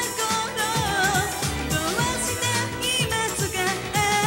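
A girls' idol pop group singing a song live over pop backing music with a steady beat.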